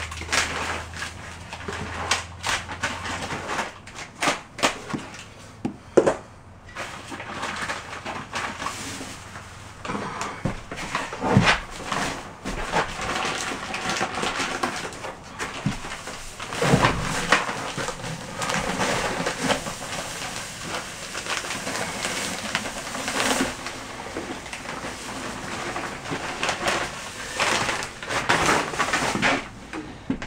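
A bag of dry deck mud (sand-cement mortar mix) being handled and emptied into a plastic bucket: irregular rustling, pouring and scraping noise with scattered knocks.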